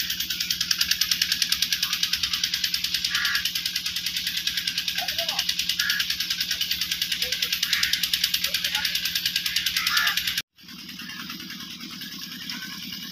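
A steady drone that pulses rapidly and evenly, with a hiss on top, and a few faint distant voices; it cuts off abruptly about ten and a half seconds in.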